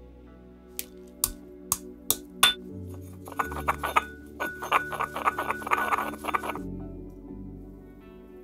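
Pestle working chalk in a mortar: five sharp knocks in the first half, about half a second apart, then about three seconds of rapid grinding and scraping as the chalk is crushed to powder. Background music plays throughout.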